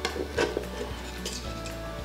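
Carving knife and fork clicking against a chopping board as roast lamb is sliced, with two sharper clicks near the start, over soft background music.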